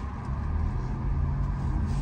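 Steady low rumble of a car's engine and road noise heard inside the cabin, swelling slightly early on and then holding.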